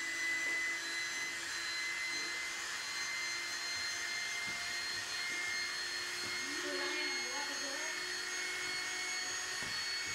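Electric air pump running steadily as it blows air into an inflatable pool, a constant motor whine over a rush of air.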